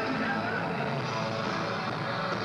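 Loud, blurred live rock concert sound as picked up from within the crowd: the amplified band mixed with crowd voices and shouting, with no clear rhythm.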